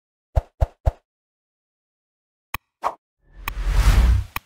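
Edited intro sound effects. Three quick, low plops come in the first second, then a sharp click and another plop about two and a half seconds in, then a noisy whoosh that swells up over the last second.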